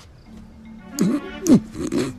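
A man groaning twice with a falling pitch, over background music with a held low note that comes in shortly after the start.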